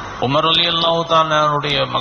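A man's voice in sermon delivery, slow and chant-like, with long held tones at a steady pitch.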